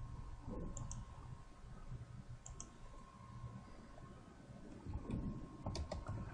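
Faint clicking at a computer: two quick pairs of clicks, then a few keyboard keystrokes near the end as typing starts, over a low steady hum.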